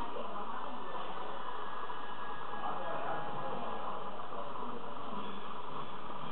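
Steady background hiss with faint, indistinct voices underneath.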